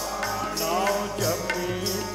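Sikh devotional kirtan: a man's voice singing Gurbani in a wavering melodic line over sustained harmonium chords, with tabla strokes about twice a second.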